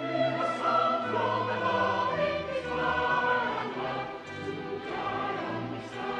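Church choir of boys and men singing a sacred piece in parts, the boys' treble voices high above the men's lower voices.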